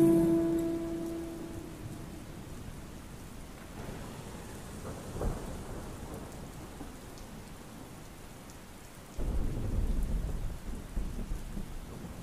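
Rain-and-thunder ambience added to a lofi music edit: a steady hiss of rain under the last held notes of the slowed song, which fade out over the first two seconds. A brief crack comes about five seconds in, and a heavier low rumble of thunder starts a little after nine seconds.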